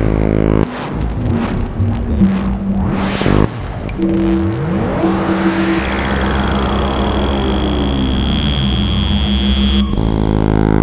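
Serge Paperface modular synthesizer (1978) playing an electronic improvisation: stacked tones that cut and change abruptly, and a fan of rising pitch glides about halfway through. For the last four seconds a deep steady drone and a thin steady high tone sound under it.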